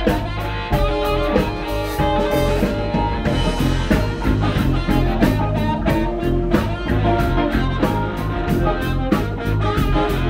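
Live blues band playing with a steady beat: a harmonica played through a vocal microphone carries long held notes over electric guitar, electric bass and drums.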